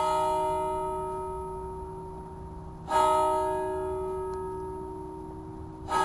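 A bell struck three times, about three seconds apart, each stroke ringing on and slowly fading; the third comes right at the end.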